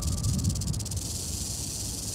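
A steady hiss of filtered noise over a faint low rumble, the electronic noise intro of an electro-metal song played live.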